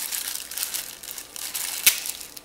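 Clear plastic accessory bags crinkling as they are handled, with one sharp click near the end.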